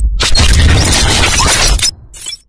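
Loud intro sound effect: a dense, crackling crash of noise across the whole range, with a brief break at the start and an abrupt stop near the end.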